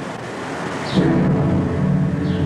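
Dark, low synthesized music drone that comes in suddenly about a second in, over a background hiss, with a deep rumble at its onset.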